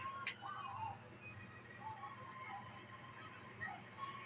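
Faint cartoon soundtrack playing from a television across a small room: music with faint wavering tones, and a sharp click about a third of a second in.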